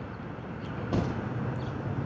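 Steady outdoor vehicle noise, with a single click about a second in, after which a faint low steady hum joins.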